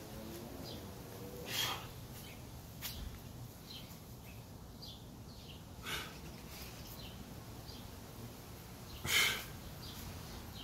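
A man's sharp exhalations while doing Spider-Man push-ups, three short breaths a few seconds apart, the last the loudest.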